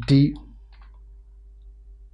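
A man says one short word at the start, then a few faint computer keyboard key clicks as typing goes on, over a steady low hum.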